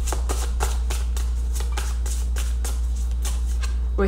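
Tarot deck being shuffled by hand: a quick, irregular run of crisp card clicks and slaps, over a steady low hum.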